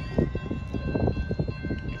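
Level-crossing warning bell ringing steadily as the crossing activates for an approaching train, over low wind buffeting on the microphone.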